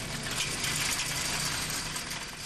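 Folding steel accordion barrier gate rattling as it is pulled open on its casters: a dense, continuous run of small metallic clicks over a steady low hum.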